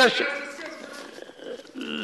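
Speech: a man's voice trails off mid-sentence into a short pause filled with faint background voices in a large chamber, and his speech starts again near the end.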